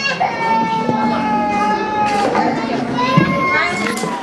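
Young children's voices in a busy play area, with one high-pitched voice held steady for about two seconds near the start and a shorter rising one near the end.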